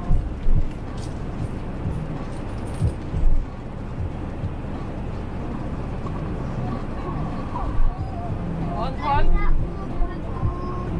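Steady low road and engine rumble inside the cab of a moving Fiat-based motorhome, with a few light crackles of a plastic snack wrapper being opened.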